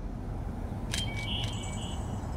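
Outdoor field ambience: a steady low rumble of wind and open air, with a short bird call of a few high chirps about a second in.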